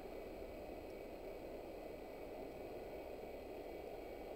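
Faint, steady low background noise with no distinct sounds in it.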